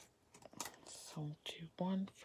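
A few small sharp clicks from a paper planner sticker being handled and peeled off its sheet, then a soft murmured voice in the last second.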